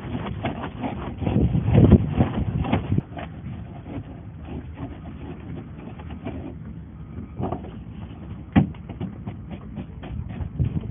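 Handsaw cutting through a polystyrene waffle pod, with rapid rasping strokes that are loudest in the first three seconds. After that come quieter scrapes and clicks of the foam pods being handled, and one sharp knock late on.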